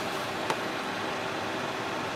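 Steady background hiss with a faint hum, and a single sharp click about half a second in.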